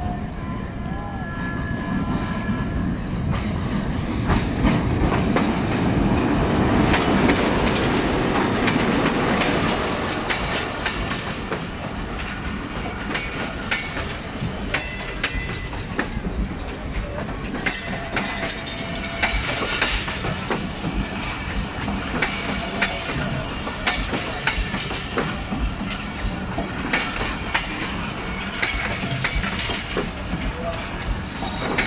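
Hitachi ALCO HBU-20 diesel-electric locomotive and its passenger train pulling into a station. The sound is loudest a few seconds in, as the locomotive passes. It then settles into the steady rumble and clickety-clack of coach wheels rolling over the rail joints.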